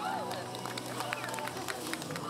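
People's voices over a steady background of chatter, with scattered sharp clicks or taps.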